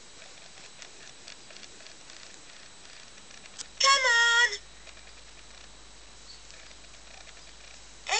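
Interactive Waybuloo Nok Tok plush toy giving one short, high-pitched electronic call through its small speaker, its pitch wavering, about halfway through. Around it only a low hiss with a few faint ticks.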